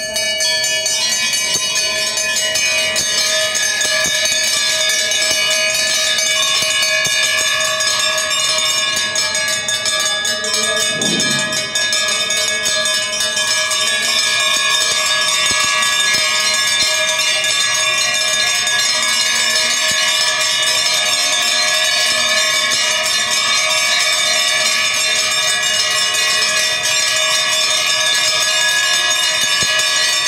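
Temple bells ringing continuously as a dense, steady wash of many ringing tones at one even loudness.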